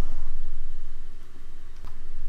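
Low steady hum of background noise, with a faint single click near the end.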